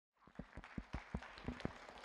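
Faint, scattered hand claps from an audience: separate, irregular claps a few times a second.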